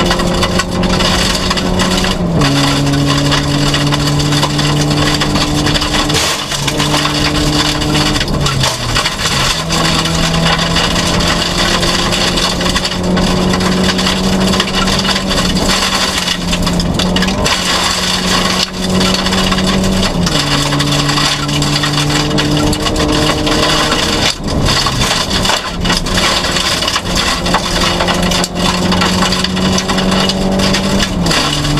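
Audi 80 rally car's engine heard from inside the stripped cabin, held high in the revs, its pitch stepping down and back up with gear changes every few seconds. Under it runs a dense rushing noise of tyres and gravel on an unpaved stage road.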